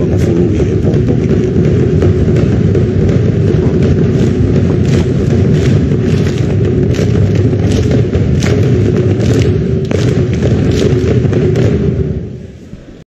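Tongan ma'ulu'ulu performance: a large group of schoolgirls singing together, holding a long note, over a dense drum-led accompaniment. From about halfway through, sharp beats come roughly twice a second.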